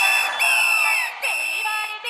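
Breakdown in a Hindi roadshow DJ dance remix: the bass and drums drop out, leaving a high, steady buzzer-like synth tone that breaks off twice, over falling sweeps.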